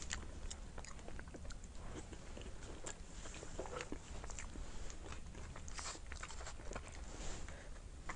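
Close-miked chewing of a soft cream-filled bun, with many small wet mouth clicks scattered through.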